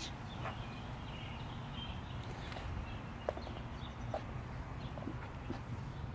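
Quiet outdoor background with a low steady hum and a few faint scattered taps and clicks, one sharper click about three seconds in: soft footsteps on asphalt and handling of a handheld camera as it is moved around a car.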